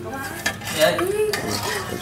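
Metal ladle clinking and scraping against a stainless steel bowl of bánh xèo batter, with several sharp clinks.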